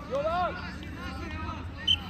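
A brief shout at the start, then faint voices calling on an outdoor football pitch. A single sharp knock near the end.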